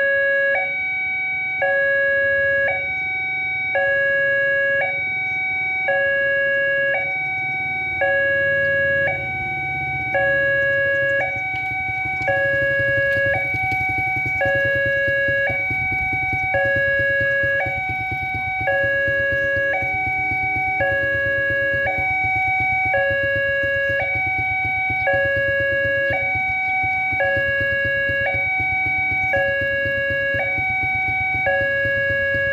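Electronic level-crossing warning signal from a horn loudspeaker, sounding a two-tone alarm that switches between a lower and a higher pitch about once a second while the barrier is down. A low rumble runs underneath, growing louder partway through.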